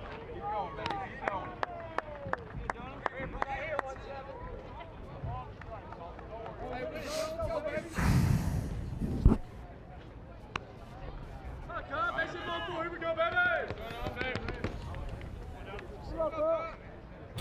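Ballpark ambience between pitches: players and fans calling out. Scattered sharp clicks come in the first few seconds, and a brief rush of noise about eight seconds in ends in a sharp knock, the loudest moment.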